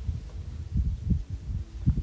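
Irregular low rumbling thumps on a clip-on microphone, with a faint hum, during a pause with no speech.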